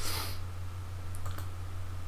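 A few sharp computer keyboard clicks about a second in, over a steady low electrical hum, with a brief rush of noise at the very start.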